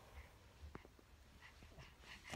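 Near silence: faint room tone with a light click about three quarters of a second in.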